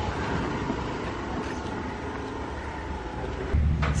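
Steady outdoor background noise: a low rumble under a soft hiss, with no single clear source. The rumble gets louder near the end.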